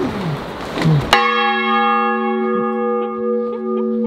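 A large bronze church bell, swung by its rope in a wooden bell tower, strikes once about a second in and rings on in a steady, sustained hum of several tones. Before the strike there is a noisy rustling hiss.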